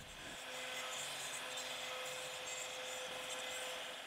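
CNC router spindle running steadily while a small straight bit cuts a hand-shaped outline through a thin wood board: an even hiss of cutting with a thin held tone.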